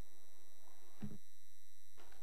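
Steady low electrical hum with faint high-pitched whine tones on the sound system, in a gap between speakers; a brief faint sound about a second in.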